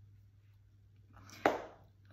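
A faint, steady room hum, then about a second and a half in a woman's short, sharp breathy burst, like a quick exhale or a breath of laughter, that fades within half a second.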